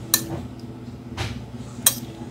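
A kitchen utensil clinking against glass dishes three times as peach pieces are put into a glass dessert bowl; the last clink, near the end, is the loudest.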